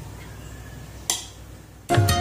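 A single sharp clink of a steel ladle against an aluminium pot about a second in, over a low hum. Background flute music starts at the very end.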